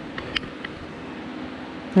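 Electric space heater's fan running with a steady hum and hiss, with a few faint clicks in the first second.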